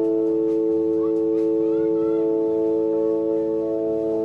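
Electronic keyboard holding a steady sustained chord of smooth, pure tones, with a few faint short gliding chirps above it in the middle.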